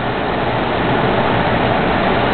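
Steady background noise, an even rushing hiss with no clear pitch or rhythm.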